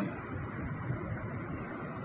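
Steady outdoor background rush: wind on a phone's microphone mixed with distant city traffic, with no distinct event.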